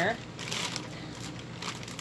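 A brief crinkling rustle of plastic packaging being handled, about half a second in, then quiet room sound.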